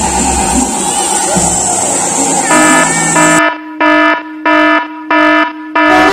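A horn sound: a held note starts about two and a half seconds in, then breaks into a quick run of short, evenly spaced blasts.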